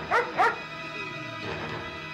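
A dog barking twice in quick succession near the start, each bark short and falling in pitch, over steady background music.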